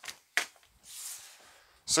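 Sheets of paper being picked up off a laminate tabletop: a sharp tap at the start and another about half a second in, then a soft rustle of paper.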